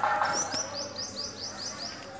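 A small bird chirping a quick run of about eight short, high, falling notes, about five a second.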